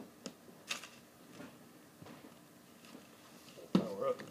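Scattered soft clicks of fingers pressing the keypad buttons on a handheld refrigerant identifier, with one louder knock of the unit being handled near the end.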